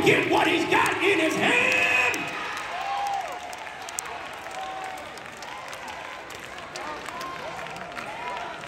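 A church congregation responding to a sermon with loud shouts and exclamations for the first couple of seconds. These then die down into scattered clapping and calls of response under a soft crowd murmur.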